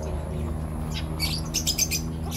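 Birds chirping: a quick run of short, high chirps in the second half, over a steady low hum.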